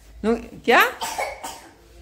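A woman's short, exclaimed "kya?" ("what?") with a sharply rising pitch, followed by quieter talk.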